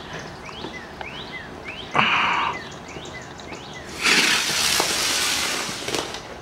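A firework going off: a sudden short hiss about two seconds in, then a louder hiss of sparks lasting nearly two seconds and fading near the end.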